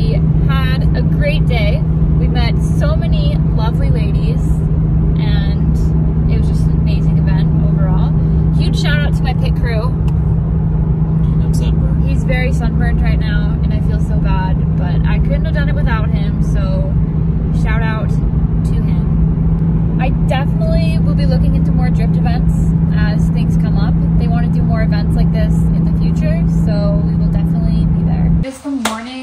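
Loud, steady road and engine drone inside a 2017 Nissan 370Z's cabin at highway speed, with a constant low hum from its V6 and drivetrain; a woman talks over it throughout.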